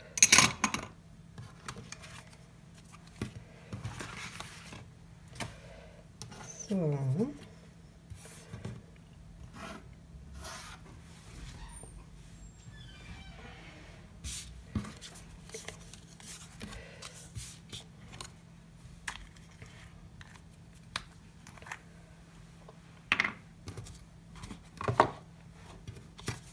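Paper squares and a card box being handled and set down on a hard concrete worktop: scattered light taps, clicks and paper rustles, with a brief cluster of louder taps near the end.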